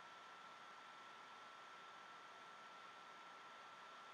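Near silence: a faint steady hiss from a thin stream of tap water running into a bathroom sink, with a faint steady high-pitched whine underneath.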